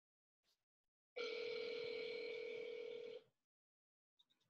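A telephone ring tone: one steady ring lasting about two seconds, starting about a second in.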